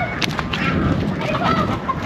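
Chickens clucking, a few short calls over a low background rumble.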